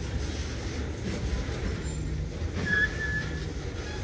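Freight cars rolling past on the rails with a steady low rumble. About two-thirds of the way through, a brief high squeal from the wheels, the loudest moment.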